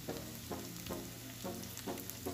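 Onions and garlic sizzling softly in oil in a stainless steel pan, under light background music of plucked notes about twice a second.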